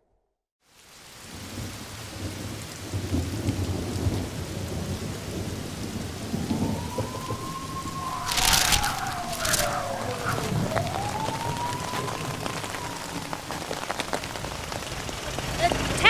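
Heavy rain falling with rolling thunder, fading in after a moment of silence. A sharp crack comes about eight and a half seconds in, the loudest moment, and a faint tone glides slowly up and down through the middle.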